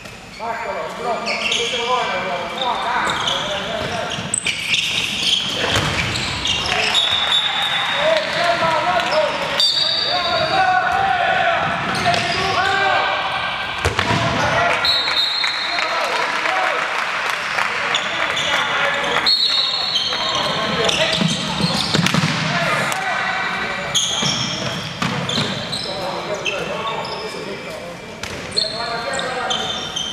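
Handball match sounds on a wooden court: the ball bouncing and slapping repeatedly, players shouting and calling out, and several short high squeaks.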